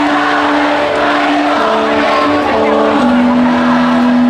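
Live rock band with an electric guitar playing a sustained melody: long held notes that step from one pitch to the next, through the stage amplifiers.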